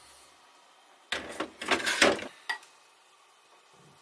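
Stainless-steel blender jug set back down onto its cooker base with a clatter of knocks and scraping about a second in, lasting about a second, then one short knock.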